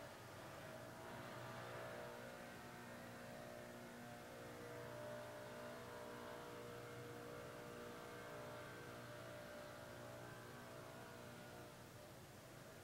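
Faint, steady engine-like hum made of several held tones, easing off slightly near the end.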